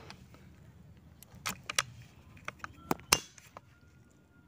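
A handful of sharp metallic clicks and clacks from handling a PCP air rifle, most likely its bolt and action being worked, spread over a couple of seconds. The sharpest, loudest click comes about three seconds in.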